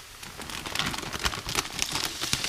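Chopped onions sizzling and crackling in hot oil in a frying pan, a dense patter of small pops that grows louder in the first half second, as raw minced beef is tipped in.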